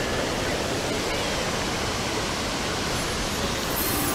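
Steady rushing of a shallow river flowing over rock shoals.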